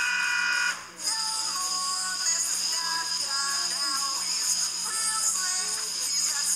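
Two high-pitched cartoon voices screaming together in one held note, which cuts off under a second in. A moment later a cartoon theme song starts, with sped-up, pitched-up singing over upbeat music.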